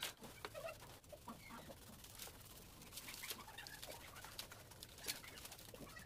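Faint bird calls over a quiet work space, with a few light scrapes of a steel trowel on a ceramic floor tile.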